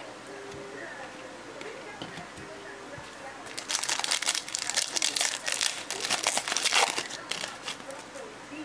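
Foil wrapper of a trading-card pack being torn open and crumpled in the hands: a dense, loud crackling that starts a few seconds in and lasts about four seconds.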